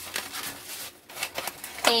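Foam egg cartons being handled and turned over a cardboard box: a run of short rubbing and tapping sounds.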